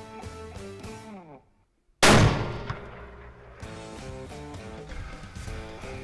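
Guitar background music slides down in pitch and cuts out, then after a brief silence a single loud rifle shot rings out and dies away over about a second and a half, and the music comes back in.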